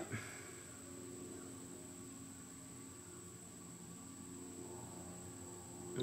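Quiet room tone: a faint steady hum with a thin high whine, and no distinct events.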